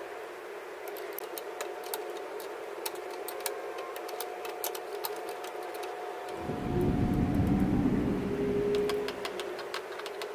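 Light metallic clicks and taps of a small wrench working the brake lever's pivot bolt on a Vespa GTS 300 handlebar. A low rumble swells for about two seconds past the middle.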